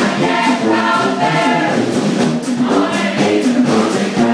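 A brass band's members singing together in unison as a group chorus, over a steady percussion beat about twice a second.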